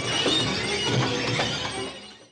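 Soundtrack music with a dense texture of crackling, shattering noises over low pulsing tones, fading out at the very end.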